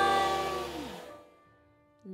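A small jazz band with piano and double bass holds a final sustained chord that fades away over about a second, leaving near silence.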